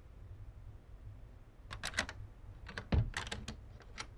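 Footsteps on a hard floor walking away: a couple of sharp steps, then a quicker run of clicks and knocks with one dull thump about three seconds in, the loudest sound.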